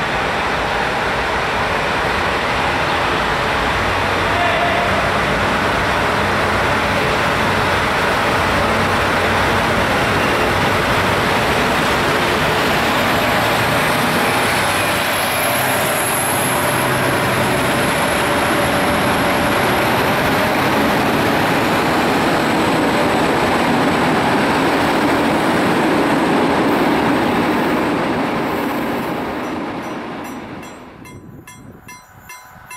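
Locomotive-hauled passenger train running along the platform under a train-shed roof, a steady loud rumble of locomotive and coaches that fades near the end. A thin high squeal rises out of it about halfway through and lasts several seconds.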